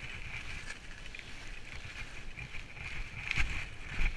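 Skis sliding and scraping over packed piste snow during a downhill run, with wind buffeting the camera microphone; a louder scrape comes a little after three seconds in.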